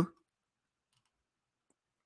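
Near silence: the last moment of a man's spoken word, then a gated pause with no other sound.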